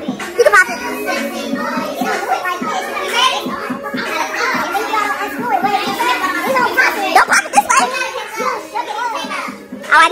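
Several women talking and cheering over one another, excited and high-pitched, with music playing underneath. There are a few sudden loud shouts, one near the start and more past the middle.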